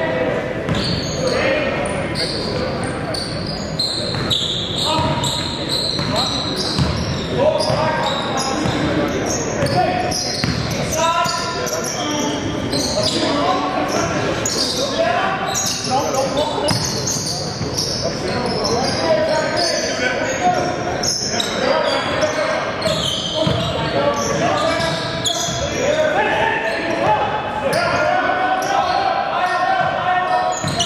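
Basketball game in a large gym: a ball bouncing on a hardwood court, with players' shouted calls throughout, echoing in the hall.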